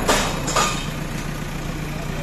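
JCB 3DX backhoe loader's diesel engine running steadily while the backhoe lifts a one-ton steel plate off a truck. Two short, loud bursts of noise come about half a second apart near the start.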